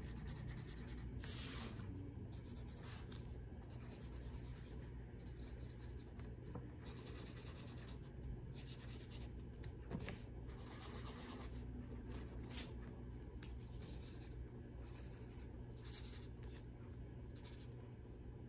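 A black felt-tip marker scratching on paper in short, irregular strokes.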